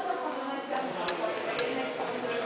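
Indistinct background talking, with a few short sharp clicks around the middle.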